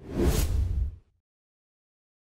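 A single whoosh sound effect with a deep low boom under it, lasting about a second.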